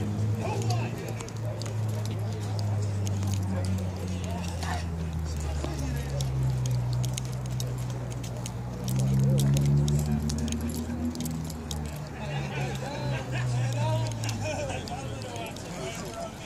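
A car engine running at low revs: a low, steady note that drifts slowly down, then rises to its loudest about nine seconds in before falling away, with faint clicks of handling noise throughout.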